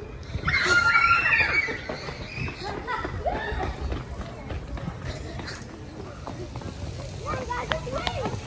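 Children shrieking high and loud about half a second in, then running footsteps on paving stones as they flee, with scattered voices.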